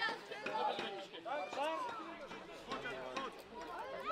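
Indistinct voices talking and calling out, fairly quiet, with a few faint clicks.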